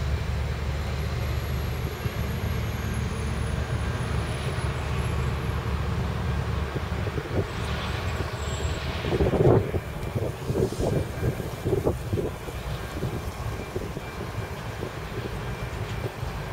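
ALCO RSD-16 diesel locomotive moving slowly with a train of mining hopper cars, its engine a steady low drone. About nine seconds in comes a cluster of clanks and knocks from the train over some three seconds, the first the loudest.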